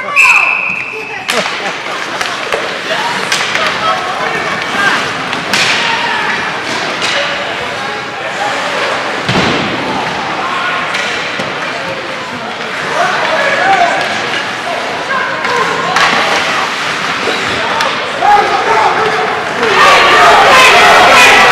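Ice hockey game in an arena: sticks and puck knocking, with thuds and slams against the boards, under spectators' shouting throughout. A short, high, steady whistle blast sounds right at the start, just as the puck is dropped for a faceoff.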